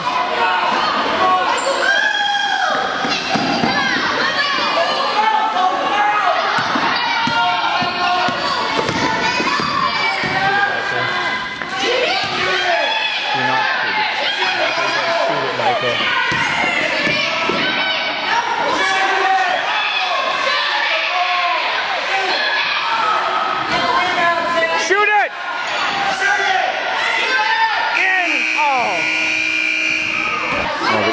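Youth basketball game in a gym: a basketball bouncing on the hardwood floor under a steady din of players' and spectators' voices and shouts that echo around the hall. Near the end a buzzer sounds steadily for about two seconds.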